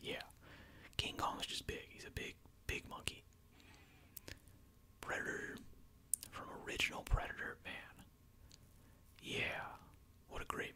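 A man whispering close to the microphone in short phrases with pauses between them, with a few faint clicks and a soft low bump near the middle.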